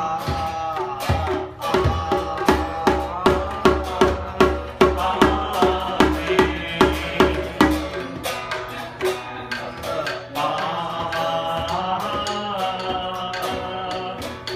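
A small hand drum beaten in a steady pulse, about two and a half strokes a second, under a sung melody and a strummed small acoustic guitar. The drumming stops about eight seconds in while the singing and guitar carry on.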